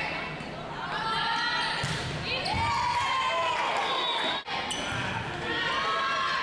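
Volleyball match sound in a reverberant gym: players shouting and calling over the ball being hit and sneakers squeaking on the hardwood floor. There is a brief sudden dropout about four and a half seconds in, where the footage is spliced.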